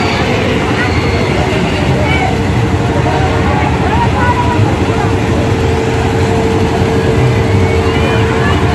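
Fairground din: a steady mechanical rumble with a constant hum, with many voices mixed through it.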